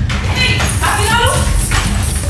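A woman shouting angrily in loud, high-pitched bursts over background music with a steady low bass.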